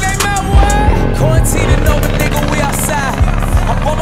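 Hip-hop music with a regular bass beat, mixed with motorcycle engines revving as riders pull wheelies.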